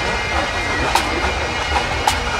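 Pipe band playing: Highland bagpipes sounding steady drones under the chanter melody, with sharp drum strikes about once a second.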